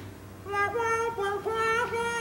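A high-pitched, wordless tune of held notes that step up and down, starting about half a second in.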